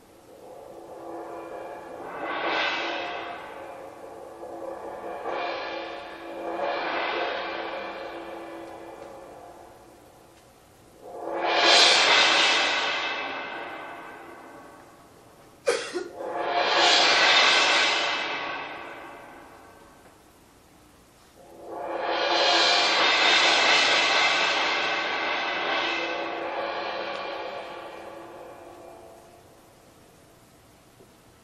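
Drum-kit cymbals played as slow washes: a series of swells that build and die away over a few seconds each, with quiet gaps between. About eleven seconds in one swell starts with a sharp strike, and a brief sharp click comes just before the next one.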